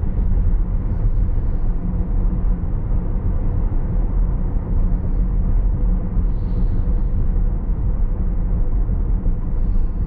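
Tyre and road noise inside the cabin of a Tesla Model S Plaid driving at around 40 mph. It is a steady low rumble with no engine note.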